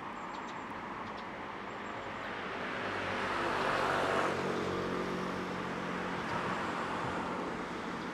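Road traffic noise with a motor vehicle passing close by. Its sound swells to a peak about four seconds in and then eases back into the steady hum of traffic.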